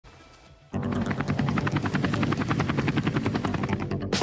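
Helicopter rotor chopping in a fast, even beat, starting suddenly under a second in, with music beneath it.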